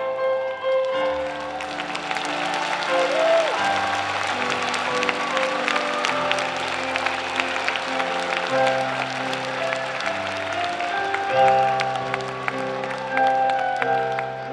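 Audience applauding over sustained backing music chords. The clapping starts about a second in and thins out near the end.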